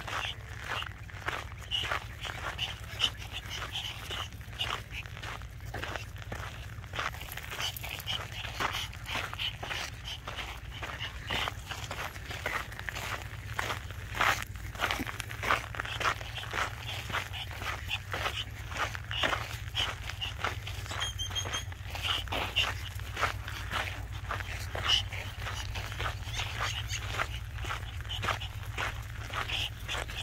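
Footsteps crunching steadily on a packed dirt road, several a second, with a dog's panting and movement mixed in, over a steady low rumble.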